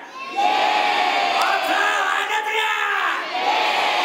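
A theatre audience shouting and cheering together in long drawn-out calls, mixed with the MC's amplified shouting voice over the PA, with a brief dip a little after three seconds.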